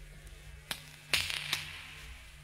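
Three sharp knocks over a low steady hum in a live concert recording. The second knock, about a second in, is the loudest and is followed by a brief hiss.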